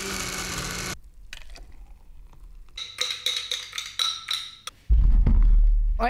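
Countertop blender with a glass jug running on a protein shake with frozen berries, cutting off sharply about a second in. A run of light knocks and clinks follows, then a loud low rumble near the end.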